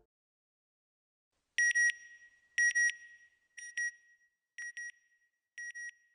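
Electronic beeps in pairs: two short high tones about once a second, each pair fainter than the last, starting about a second and a half in.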